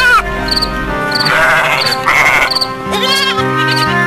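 Sheep bleating a few times over background music with held notes, with regular cricket chirps throughout.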